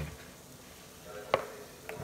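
Quiet room tone with one light, sharp knock about a second in and a fainter tap near the end.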